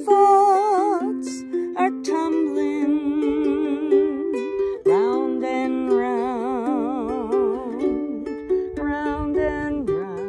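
Ukulele strummed in chords while a woman sings over it, her voice wavering in a slow vibrato and sliding up in pitch about halfway through.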